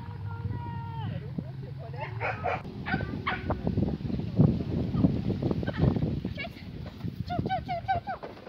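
A small dog's high-pitched excited barks and yips while it runs an agility course, mixed with the handler's short calls and irregular thuds of running on grass.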